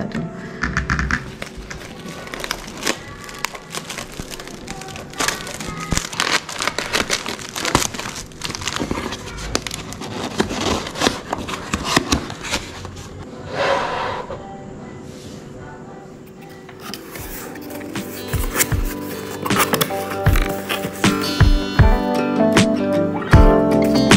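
Cardboard boxes and packaging handled and opened by hand: many crinkles, rustles and light taps, with one longer rasp about fourteen seconds in. Background music comes up more strongly over the last few seconds.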